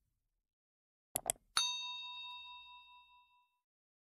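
Two quick mouse-click sound effects, then a single bell ding that rings out and fades over about two seconds, the notification-bell sound of a subscribe animation.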